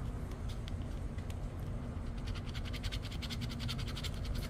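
A metal coin scraping the coating off a lottery scratch-off ticket. There are a few light scrapes at first, then a quick run of rapid, even back-and-forth strokes in the second half.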